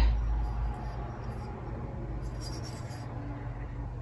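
Quiet room noise with a steady low hum, with no distinct event.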